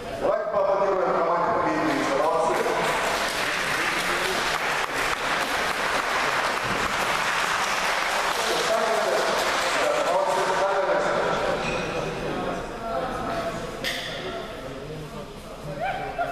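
A hall audience applauding, with people's voices calling out over the clapping. The applause fades away about twelve seconds in.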